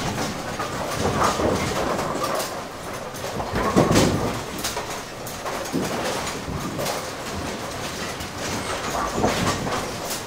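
Ten-pin bowling alley machine room with several lanes' pinsetters running: a continuous heavy mechanical rattle and rumble, broken by louder clanks about a second in, about four seconds in (the loudest) and again near the end.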